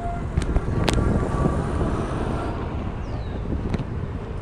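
A van driving past close by, its road noise swelling over about the first two seconds and then fading, over a steady low rumble of wind on the microphone and street traffic. A couple of sharp clicks come about half a second and a second in.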